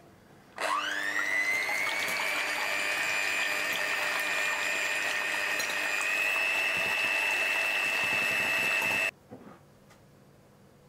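Electric hand mixer beating egg whites in a glass bowl: the motor whines up to speed about half a second in, runs steadily with a slight rise in pitch around six seconds, and cuts off abruptly about a second before the end.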